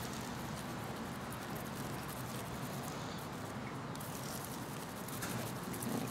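Damp sand-and-soil mix rubbed by hand through a small metal mesh sieve, fine grains falling onto seed-tray cells in a soft, steady rustling patter.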